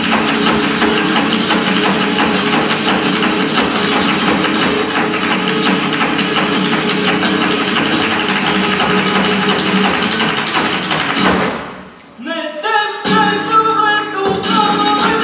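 Live flamenco: a dancer's shoe footwork (zapateado) on the stage floor with palmas hand-clapping and flamenco guitar, a dense fast rhythm that stops abruptly about three-quarters of the way through. After a brief pause, singing and guitar start again near the end.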